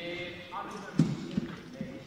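A man's voice talking to a group, with a sharp knock about a second in and a few lighter taps after it.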